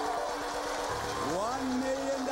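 The Price Is Right's Big Wheel spinning, a fast patter of clicks from its pegs against the pointer, under a studio audience cheering and shouting as it spins for a million dollars.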